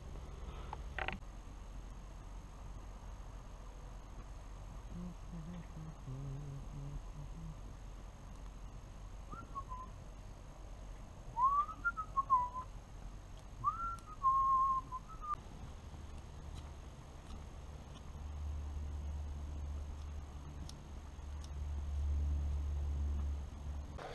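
Short whistled notes, each gliding up and then down in pitch, in a few small groups about halfway through. Later a low rumble sets in toward the end.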